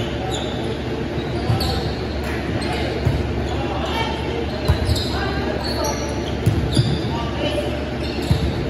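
A volleyball being struck by players' hands during a rally, a series of sharp thumps about every second and a half, echoing in a large gym hall.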